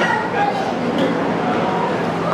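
Spectators and coaches talking and calling out over one another in a large echoing hall, with a short sharp yelp-like shout about a second in.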